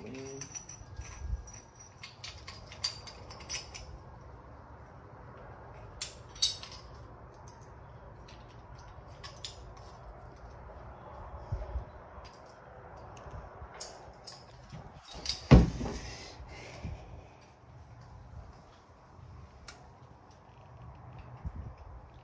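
Intermittent light metallic clicks and taps of parts and tools being worked on a dirt bike's handlebar while a throttle assembly is fitted, with one louder sharp knock about two-thirds of the way through.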